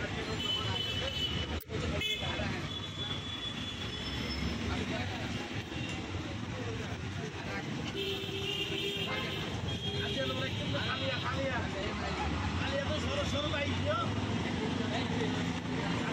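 Outdoor road traffic ambience: a steady bed of passing vehicles, with horns sounding near the start and again about eight seconds in, and people talking faintly in the background.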